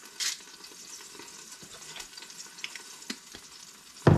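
Olive oil sizzling faintly in an Instant Pot's inner pot, heating on sauté for browning. A short gritty burst near the start from a salt grinder turned over the pot, and a few light clicks.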